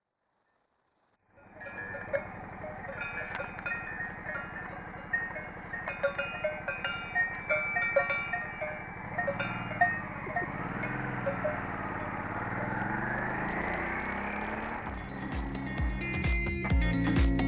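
Cowbells on a small herd of cattle clanging irregularly as the cows walk past, starting after a second or so of silence. From about ten seconds in, a motorcycle engine comes up, its pitch rising and falling as it pulls away.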